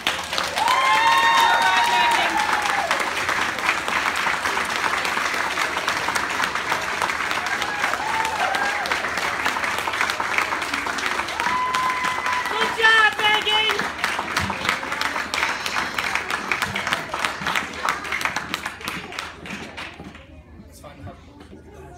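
Audience applauding, with a few shouted whoops of cheering among the clapping; the applause thins out toward the end.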